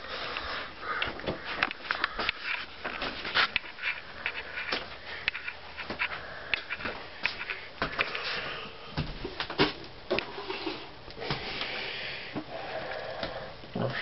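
Handling noise of a handheld camera carried while walking: irregular clicks, knocks and rustles, with a person sniffing now and then.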